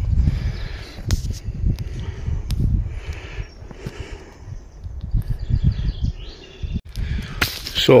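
Uneven low rumbling with a few sharp knocks from a handheld camera being carried and moved: footsteps and handling noise on the microphone. Faint bird chirps in the middle.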